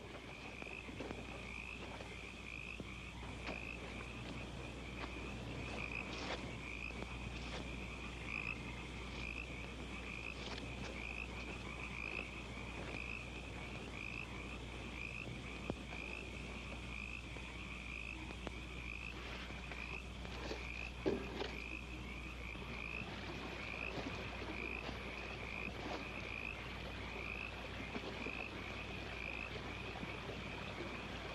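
A chorus of frogs calling steadily, a high pulsing trill repeating over and over without pause, over a low steady hum.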